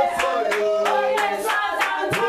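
Worship singing with steady rhythmic hand clapping from the congregation.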